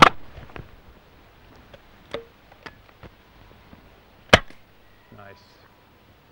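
Air rifle shots at beer cans: one sharp crack at the start and a louder one about four seconds later, with a few fainter clicks between.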